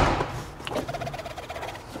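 A door slams shut at the very start, its sound dying away within half a second, followed by quiet with a few faint clicks.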